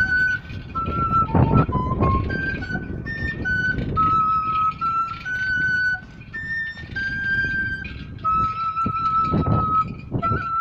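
Quena, the Andean notched cane flute, playing a slow melody of held notes one at a time, stepping up and down in pitch. A few short bursts of low rumble break in, about one and a half seconds in and again near the end.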